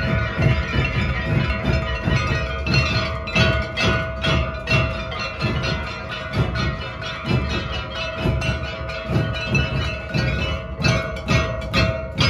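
A group of dhols beaten together in a steady rhythm, about three beats a second, with a steady ringing tone above the drumming and sharper high strikes in places.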